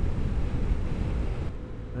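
Wind rumbling over the microphone of a Vespa GTS 125 scooter riding at road speed, with the scooter's running engine underneath. It eases off a little in the last half second.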